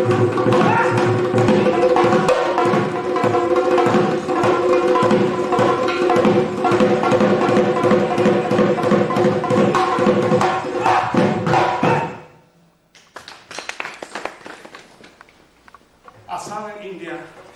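Assamese dhol, a barrel drum played with a stick and the hand, in a fast, dense, unbroken rhythm with a steady ringing tone beneath it. It stops abruptly about twelve seconds in, leaving only a few faint scattered knocks.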